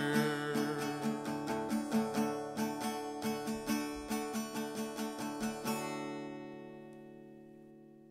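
Guitar picking the closing figure of a song, about three plucked notes a second, ending just under six seconds in on a held chord that rings out and fades.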